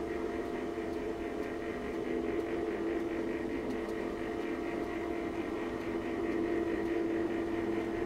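Electric roller shutter lowering over a window: a steady motor hum with a faint, evenly repeating rattle of the rolling slats.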